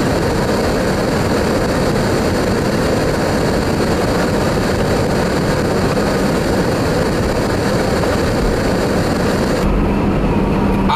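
Steady, loud rushing noise heard from inside a car driving in strong wind: wind against the vehicle mixed with tyre and road noise.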